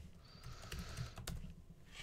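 A few faint, scattered key taps on a computer keyboard as code is typed, over a low steady hum.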